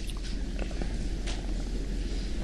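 Low steady hum and crackly rumble of room tone through an open microphone, with a few faint clicks and one brief hiss a little past the middle.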